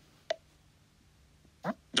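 iPad VoiceOver gesture click, a single short click about a third of a second in, as a finger drags up from the bottom edge of the screen to call up the dock. Another brief sound follows near the end.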